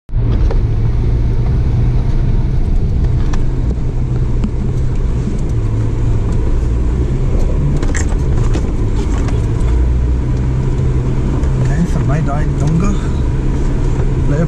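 Four-wheel-drive vehicle's engine running at steady revs, heard from inside the cab while driving a rough dirt track, with a few sharp knocks and rattles.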